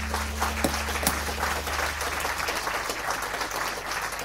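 Applause with many hands clapping, over a low held note that fades away underneath.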